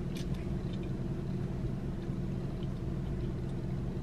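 Car idling, a steady low hum heard inside the cabin, with a few faint clicks just after the start.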